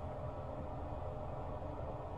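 Steady low background hum with a faint even hiss, with no distinct events.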